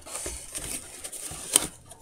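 Rustling and scraping of packing wrap and cardboard as a wrapped camera is worked out of a tight box, with one sharp knock about one and a half seconds in.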